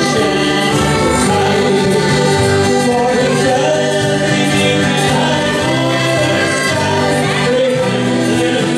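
A folk band playing live: accordions, fiddle and acoustic guitar, with hand percussion, in a steady, continuous tune.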